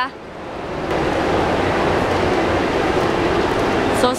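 Steady background noise of a busy indoor shopping mall, a wash of many distant voices blending together.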